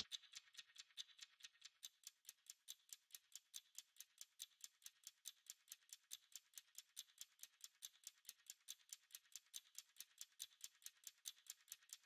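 Near silence, with a faint high ticking rhythm from background music, like a shaker, about four ticks a second.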